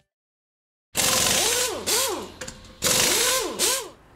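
About a second of silence, then two bursts of a buzzing, motor-like whirring, each rising and falling in pitch twice.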